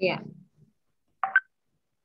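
Video-call voice audio: a woman says a short "ya", her pitch falling, then about a second later a brief high beep-like tone sounds, with dead silence between them.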